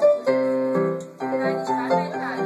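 Electronic keyboard playing a bouncy dance tune: a melody over a bass note struck about twice a second.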